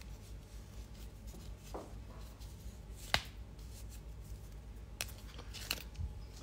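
Faint light clicks and taps from small nail-stamping tools and bottles being handled on a tabletop: one sharp click about three seconds in and two more near the end, over a low steady hum.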